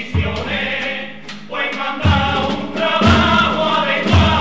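Carnival chirigota chorus singing together, with guitar and percussion marking a regular beat.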